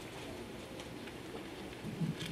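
Steady low hiss of room tone in a small room, with no distinct event.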